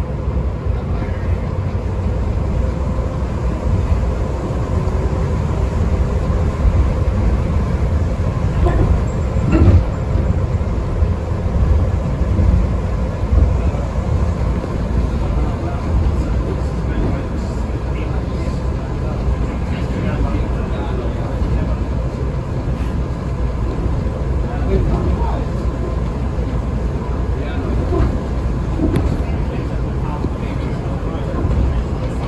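Las Vegas Monorail train (Bombardier M-VI) running between stations, heard from inside the car: a steady low rumble with a faint constant hum from the drive and a few light bumps along the beam.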